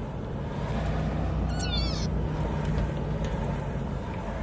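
Road and engine rumble inside a moving car's cabin. About a second and a half in comes one brief, high, wavering squeal.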